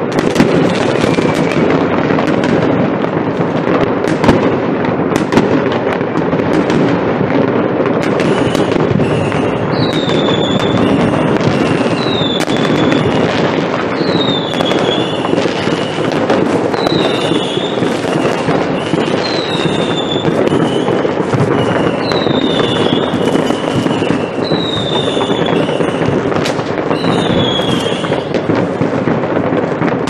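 Fireworks going off all over a town, a continuous mass of bangs and crackle from many rockets and firecrackers far and near, with a few sharper single bangs in the first several seconds. From about ten seconds in, a high falling whistle repeats every two seconds or so over the bangs.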